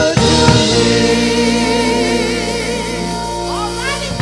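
Gospel praise team singing into microphones, holding a long final note and chord with vibrato over a sustained keyboard accompaniment; the sound slowly fades.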